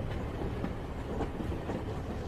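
Steady low rumble of a moving train heard from inside a passenger carriage, with a few faint clicks of the wheels.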